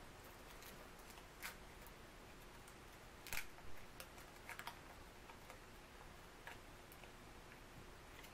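Faint, scattered crinkles and clicks of a foil wrapper and small plastic bag being picked open by hand, the loudest about three and a half seconds in, over near-silent room tone.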